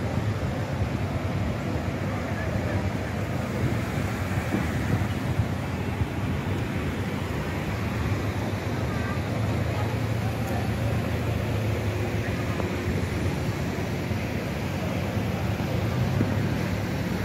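Steady low rumble of car engines idling and pulling away slowly in traffic, with indistinct voices in the background.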